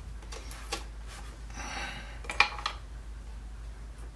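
Small clicks and rustling as a wire sculpture armature and a hand tool are handled and set down on the workbench, with the sharpest click about two and a half seconds in. A low steady hum runs underneath.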